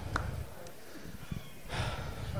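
A man breathing into a close handheld microphone, with a short audible breath near the end, over a low steady room rumble.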